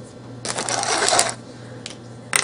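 Rustling and scraping as a soil-filled nylon head on a plastic yogurt container is handled and turned on a stainless steel table, lasting about a second.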